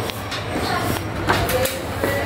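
A steady low motor hum, with a few knocks and rattles about a second and a half in as the air conditioner's indoor unit is handled.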